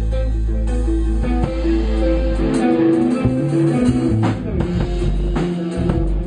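Stratocaster-style electric guitar played loud through an amplifier: low notes ring under the first couple of seconds, then a line of single notes changes pitch quickly, with a few sharp picked attacks.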